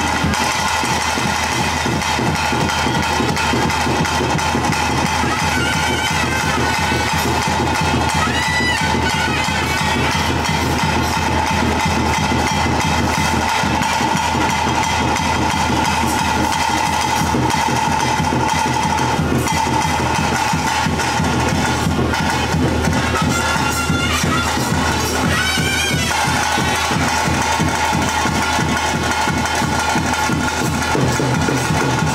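Loud traditional ritual music: a reed pipe playing a long held melody over fast, dense drumming, with a brief break in the pipe line twice near the end.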